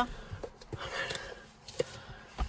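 Quiet car-cabin background with faint rustling and a single sharp click near the end.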